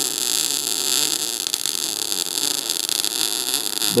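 MIG welding arc running on CO2 shielding gas at a low amperage setting, a steady crackle with sparks flying. The arc jumps a bit: the current is too low for CO2 and needs raising.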